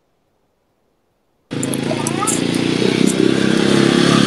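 Vehicle engine and street noise coming through a participant's video-call microphone, loud and steady, cutting in suddenly about a second and a half in.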